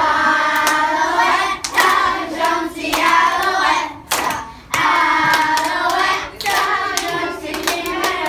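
A group of young children singing a song together, with hand claps among the phrases. The singing breaks off briefly about four seconds in, then carries on.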